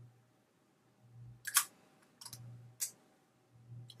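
An old plastic lipstick case being handled and worked open, with three sharp clicks, the loudest about one and a half seconds in. The case is worn and falling apart, so it does not open properly.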